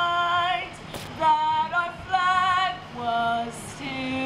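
A young woman singing solo into a microphone, in short phrases of held notes with vibrato.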